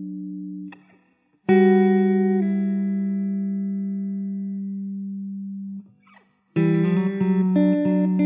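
Background music on guitar: a note struck about a second and a half in is left to ring and slowly fade, then a run of quicker plucked notes starts near the end.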